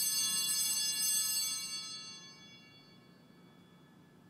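A small bell rings with a bright, high, metallic ring and fades away within about three seconds.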